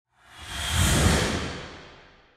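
Whoosh sound effect with a deep rumble, swelling up over about a second and then fading away, as the sting for an animated logo reveal.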